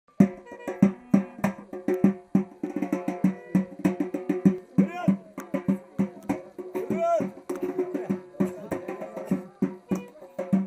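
Clarinet and a large double-headed drum playing a fast dance tune together: quick, loud drum beats under held and ornamented clarinet notes, with two swooping slides in the middle.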